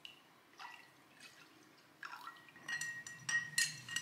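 Liquor poured from a glass decanter into a rocks glass, faint at first. From about two seconds in, a long metal bar spoon stirs in the glass, clinking against it again and again, and the glass rings.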